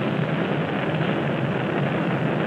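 Steady roar of a Saturn IB rocket climbing after liftoff: an even, unbroken noise.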